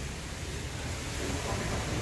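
Steady background noise: room tone with a low hum and no distinct event.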